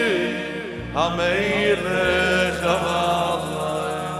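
Live Jewish music: a solo male voice chanting a slow, freely bending melodic line over sustained keyboard chords, whose bass note changes twice.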